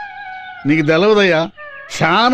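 A voice draws out one sung or wailing syllable of about a second, its pitch wavering, over a faint held note of accompaniment that sounds before and after it.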